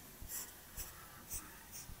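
Marker pen drawing on a paper flip chart: four short, faint, high scratchy strokes about half a second apart.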